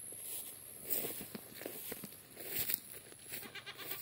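Goats bleating faintly a few times, the last call near the end wavering, over soft rustling in tall grass.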